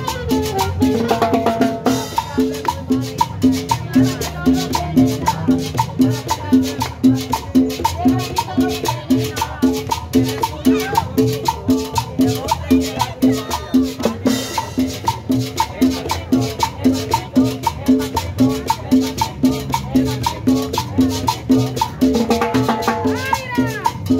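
A live street band with trumpets, saxophone and drum playing Latin dance music to a steady beat of about two to three notes a second.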